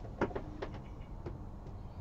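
Quiet room tone with a few faint, short clicks in the first second.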